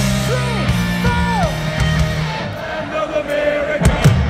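Live power metal band heard from the crowd: a low chord held under falling sung calls, then a wavering held sung note, with a few sharp drum hits near the end as the band comes back in.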